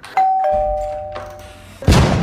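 Two-note ding-dong doorbell chime, a higher note then a lower one, both ringing on and fading. Near the end comes a loud sudden boom with a long fading tail.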